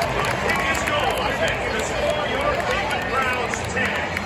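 A large stadium crowd: a steady din of many voices talking and calling out, with a few nearby voices standing out from it.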